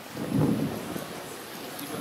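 A brief low rumble about half a second in, over faint steady outdoor background noise.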